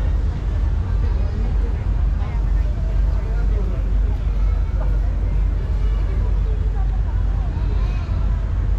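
Busy street ambience: indistinct voices of passers-by talking over a steady low rumble of traffic and city noise.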